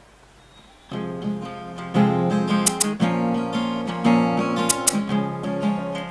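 A live band's instrumental intro: acoustic guitar strumming starts about a second in and gets louder from about two seconds in, with a few sharp percussion hits over it.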